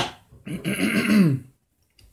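A sharp click from a glass bottle being handled at the very start, then a man's wordless vocal sound, about a second long, rising and then falling in pitch.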